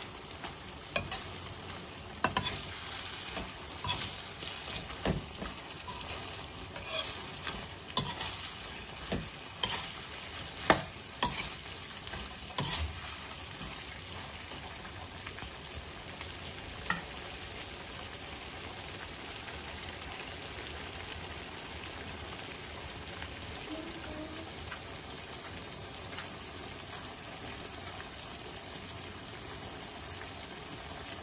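Shrimp sizzling in a sauce in a wok, a steady hiss throughout. A utensil knocks and scrapes against the wok as they are stirred over the first dozen seconds, with one more knock a few seconds later, after which only the sizzle remains.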